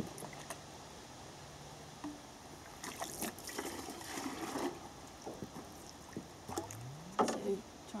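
Pond water pouring out of a clear plastic tube sampler into a plastic bucket, a splashing rush lasting about two seconds midway, with small drips and knocks around it: a zooplankton sample from the whole water column being emptied into the collecting bucket.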